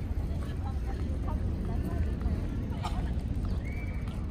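Outdoor park ambience: a steady low rumble with faint, scattered voices of people walking and cycling nearby, and a single click about three seconds in.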